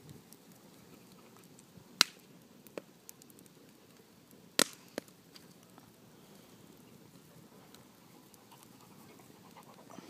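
Bonfire crackling quietly with a few sharp pops, two loud ones about two seconds in and again about two and a half seconds later.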